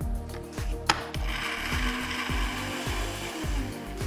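Countertop blender running and pureeing green leaves in liquid: a sharp click about a second in, then a steady whirring that stops just before the end.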